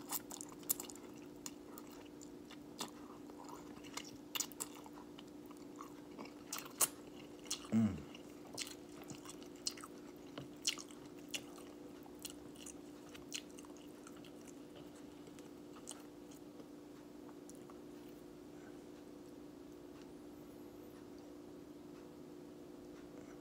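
A person chewing a mouthful of instant ramen noodles close to the microphone: scattered short mouth clicks and smacks through the first two-thirds, thinning out near the end. A faint steady hum lies under it throughout.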